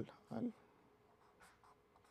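Marker pen drawing on paper: faint scratchy strokes, the clearest about a second and a half in.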